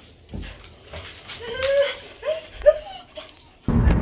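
A dog whining in the back of a vehicle: a longer whine about a second and a half in, then two short ones.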